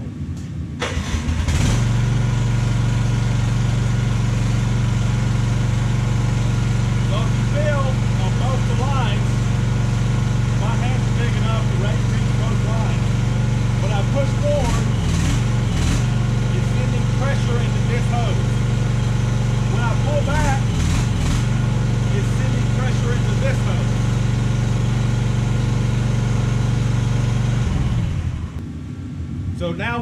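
Mini excavator's engine starting about a second in, running steadily to supply pressure to the auxiliary hydraulic lines while the thumb's foot pedal is tested, then shutting off a couple of seconds before the end.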